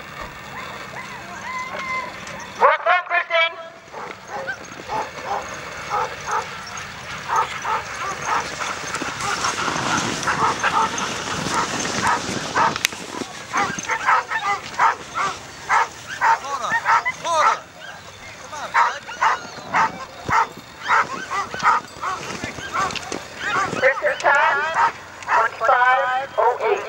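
Sled dogs barking and yipping, with many short, sharp barks in quick succession through the second half. There is a loud wavering call about three seconds in.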